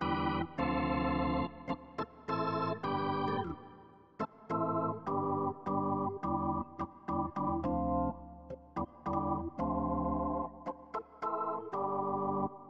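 Sampled Hammond B2–B3 hybrid organ playing a run of chords with sharp attacks, its drawbars being changed in real time. The tone is bright and full for the first few seconds, then turns darker, with the high overtones gone, from about four seconds in.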